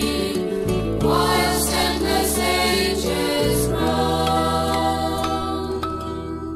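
Church folk choir singing in chorus over instrumental backing. The closing chord begins to die away near the end.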